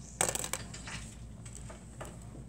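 A short clatter of several quick clicks, lasting about a third of a second and starting just after the beginning, from a writing marker being handled and set against the desk.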